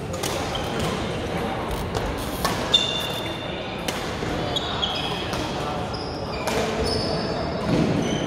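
Badminton rackets striking shuttlecocks, sharp hits scattered through with the loudest a little under three seconds in, together with short high squeaks of shoes on the court floor.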